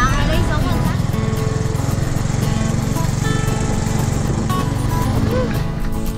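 Music and voices over the steady low running of a small vehicle's engine, heard from the passengers' seats. The voices are mostly in the first second.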